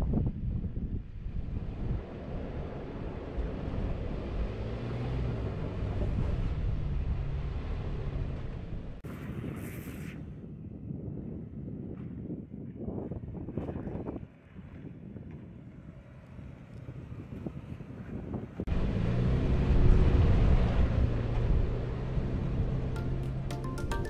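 SUV engine running under load and revving up and down as the vehicle crawls up steep slickrock, with wind noise on the microphone. The sound changes abruptly a few times, and is loudest in the last few seconds.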